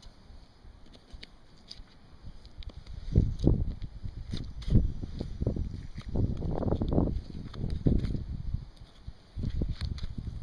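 Quiet knife work on a skinned turkey carcass with faint clicks, as breast meat is cut away from the bone. From about three seconds in comes a run of loud, irregular low thumps and rumbles lasting several seconds, then it eases near the end.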